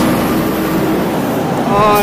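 Steady road-traffic noise heard from a moving bicycle, with a low vehicle hum that fades out about halfway through.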